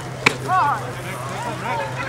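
One sharp crack of a softball impact about a quarter of a second in, followed by voices calling out from players and spectators.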